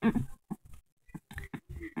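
A child laughing in a string of short, irregular bursts.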